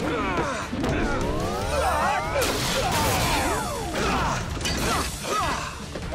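Fight-scene sound effects over music: a rising electronic whine builds for about a second and a half, then breaks into a crashing burst about two and a half seconds in, followed by falling tones and further hits.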